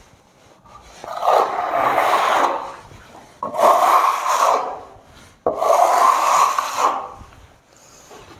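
Wide steel smoothing trowel scraping across fresh gypsum plaster on a wall in three long strokes, the second and third starting abruptly, as the plaster is levelled.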